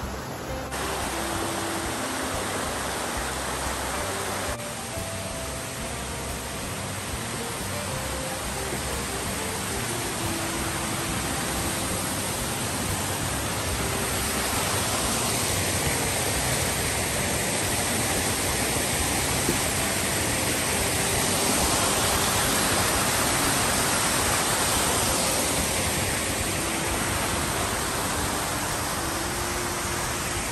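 Steady rushing water of a cascading mountain creek, a little louder in the middle stretch, with quiet background music notes underneath.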